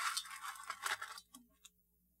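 A hand scraping and pushing small gravel on a metal tray: a crunching rattle of stones for a little over a second, then a few light clicks.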